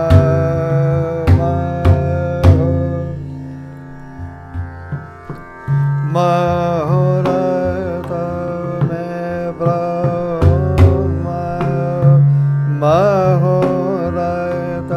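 Dhrupad vocal music: a male singer holds long notes with slow gliding ornaments over a tanpura drone, accompanied by pakhawaj strokes. Around the fourth and fifth seconds the music thins to a few light strokes before a loud stroke brings the voice back in.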